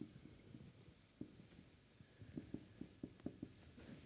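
Faint, short strokes of a marker pen writing on a whiteboard, coming in quick runs that are busiest in the second half.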